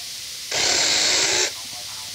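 Cordless mini chainsaw driven by a freshly rewound RS550 DC motor (wound with two parallel wires) triggered once for about a second: a high-speed whir of motor and chain that starts and stops abruptly. It is the first test run after the rewind, the motor spinning up fast.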